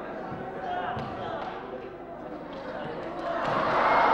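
A thud on a wooden stage floor about a second in, with a few lighter knocks after it, over the chatter of an audience in a hall that swells louder near the end.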